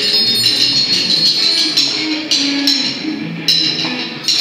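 A live band playing. Cymbals and hand percussion ring over a moving bass guitar line, with a few sharp accents in the second half.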